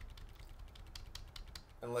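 Computer keyboard keystrokes: a quick, uneven run of light clicks.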